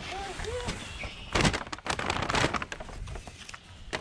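Gift wrapping paper being torn open and rustled in several quick, noisy rips, loudest around the middle.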